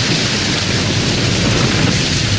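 A loud, steady rushing noise like wind or static, with no tune or beat, played on air as the lead-in to a cumbia song.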